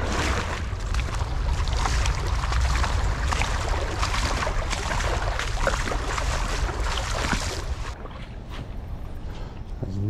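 A person wading upstream through a shallow creek: water splashing and sloshing with each step, with wind noise on the microphone. The splashing dies down about eight seconds in.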